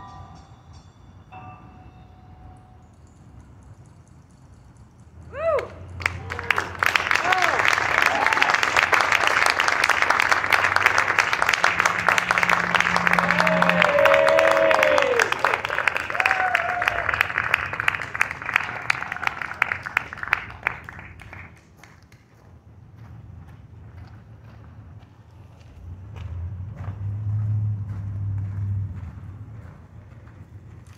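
Audience applauding and cheering with whoops after a jazz tune, starting suddenly a few seconds in, holding for about fifteen seconds, then dying away.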